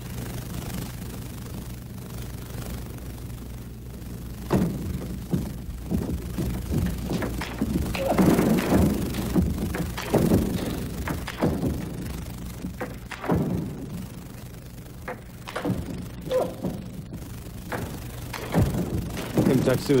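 Table tennis rally: the ball's sharp hits off the bats and the table come at irregular intervals of about a second, from smashes answered by returns from far behind the table. A steady low hum runs underneath.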